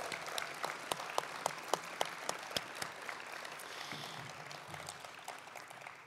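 Audience applauding, with many separate claps, dying away gradually toward the end.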